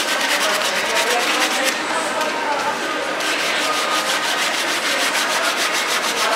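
Shoe-cleaning brush scrubbing a white sneaker's upper in rapid back-and-forth strokes, easing off briefly about two seconds in and then resuming.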